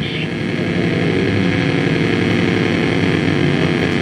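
Electronic synthesizer drone played from a keyboard through an amplifier: a steady, buzzing chord of many tones that swells slightly louder.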